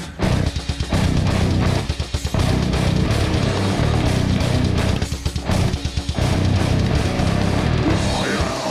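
Live modern metal band playing: distorted electric guitars and bass with a drum kit, hitting together in stop-start riffs. The full band comes in just after the start, with short gaps about two and five seconds in.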